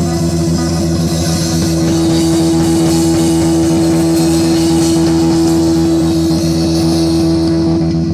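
Live rock band (electric guitar, bass guitar and a Pearl drum kit) holding one long sustained chord over a continuous wash of cymbals.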